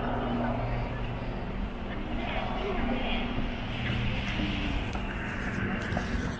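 Steady outdoor city background: a continuous low hum of traffic and urban noise with indistinct voices of people walking by.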